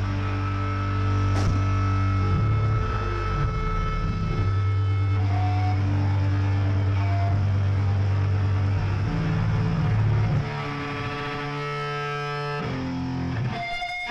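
Live rock band with distorted electric guitars and bass holding long, low chords. It drops quieter about ten seconds in as the held notes ring out.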